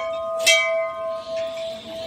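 A hanging temple bell being rung: a strike about half a second in, over the ring of the strike just before, with a clear steady tone that slowly dies away.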